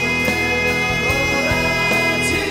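A male singer holding one long high note over live rock band backing with guitar.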